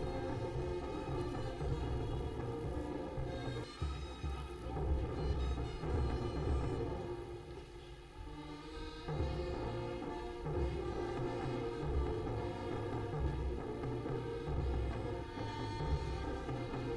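A massed military band playing a steady, rhythmic tune, with sustained brass notes over a regular low drum beat. The music thins about seven seconds in and comes back fuller about nine seconds in.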